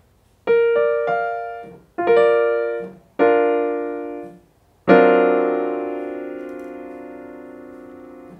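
Piano playing a B-flat major triad, its notes entering one after another from B-flat, then struck twice as a chord. Then the full D altered dominant chord (F-sharp and C in the left hand under the B-flat triad) is struck about five seconds in and left to ring, fading slowly.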